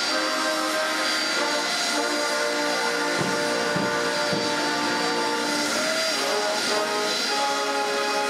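A brass band playing sustained chords over the steady rush of jet engines from the taxiing 747 Shuttle Carrier Aircraft, with a few low thumps a little past the middle.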